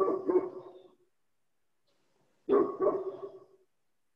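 A dog barking in two bouts, each about a second long, the second starting about two and a half seconds in.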